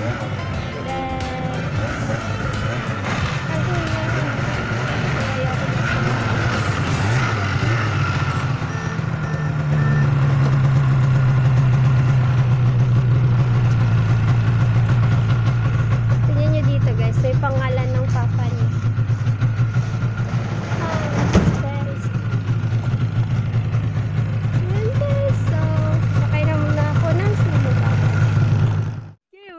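Yamaha snowmobile engine running steadily, growing louder about ten seconds in as the sled moves off over the snow, with one sharp knock about two-thirds of the way through.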